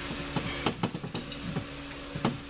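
Steady hum of an electric shop fan, with a handful of small sharp clicks and taps from handling small parts in the first half.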